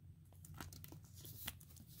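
Faint handling noise of trading cards and a clear plastic card holder: light scrapes and small clicks, with one slightly louder tap about one and a half seconds in.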